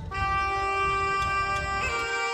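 Bagpipe music: a melody note held for over a second above a steady drone, moving to a new note near the end, with a low rumble underneath.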